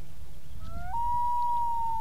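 Common loon giving its wail: one long call that slides upward about half a second in, then holds a single steady note.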